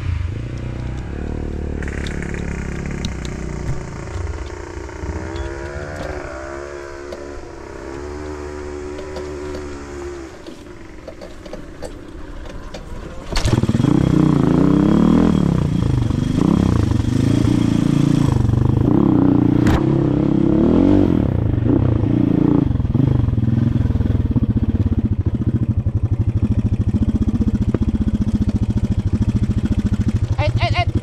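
Off-road dirt bike engine running and revving up and down while riding a rough trail, with some rattle from the bike. About a third of the way in it turns suddenly much louder and keeps rising and falling with the throttle.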